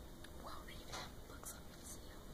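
A person whispering faintly, with a couple of short hissy sounds near the end, over a low steady background noise.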